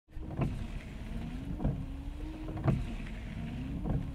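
Inside a car: a steady low rumble with a faint low hum, and a soft thump repeating about every second and a bit.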